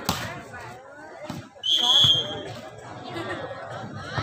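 A volleyball struck hard right at the start, then a single short referee's whistle blast about two seconds in, over background voices.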